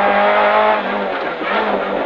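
Renault Clio Ragnotti N3 rally car's engine, heard from inside the cabin, running hard at a steady pitch, then easing off about a second in as the driver lifts for the coming right-hand turn.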